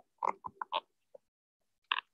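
Wooden spatula stirring and scraping mushrooms around a frying pan: a cluster of short scrapes about half a second in and another near the end, heard through a video call that cuts out the sound between them.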